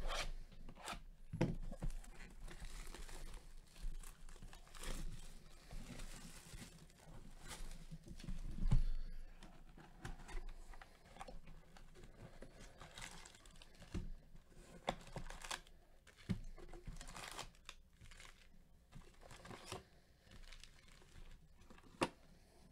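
A sealed box of trading cards being torn open, and its foil card packs crinkling as they are handled and set down. The tearing and rustling comes in irregular bursts with small knocks, loudest about nine seconds in.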